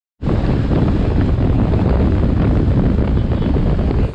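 Heavy wind buffeting the microphone of a camera on a moving motorcycle, a loud steady rush that cuts off abruptly at the end.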